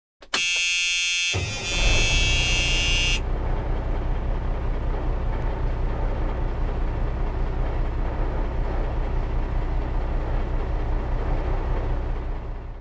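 A horn-like tone sounds for about a second, then the steady low rumble of a towboat's engine runs on. There is a high hiss over the rumble for its first couple of seconds.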